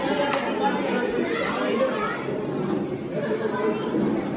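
Indistinct chatter of several people talking at once in a large hall.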